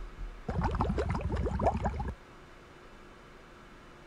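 A short gurgling, bubbling sound of about a second and a half, made of many quick rising chirps in a row, starting about half a second in.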